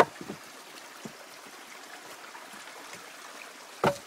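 Steady sound of spring water running and trickling in a springbox. A sharp knock comes right at the start and a short thump just before the end.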